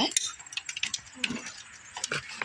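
A storm door being pushed open while a small dog steps out over the threshold: a scatter of light, irregular clicks and rattles.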